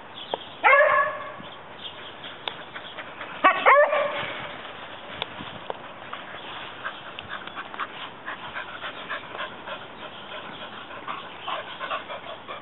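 Beagle barking while play-fighting with another beagle: one short bark about half a second in, then two quick barks about three and a half seconds in, with fainter sounds after.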